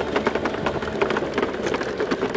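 A small motor vehicle's engine running while riding over a dirt track, with a loud rattle: a fast, irregular clicking over a steady drone.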